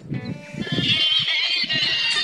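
Music with a high, wavering melody, coming in about half a second in and carrying on.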